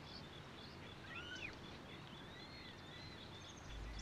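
Faint nature ambience: a few birds chirping in short rising-and-falling notes over a low steady hiss, with a soft high note pulsing evenly behind them.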